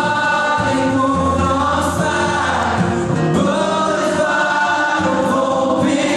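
Live acoustic song: a man singing into a microphone over a strummed acoustic guitar.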